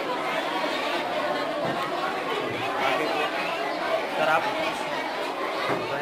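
Indistinct chatter of many people talking at once in a room, with no single voice clear.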